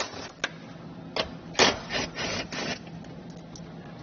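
Cordless drill run in several short bursts, backing out the small 8 mm screws that hold down a plastic trim compartment.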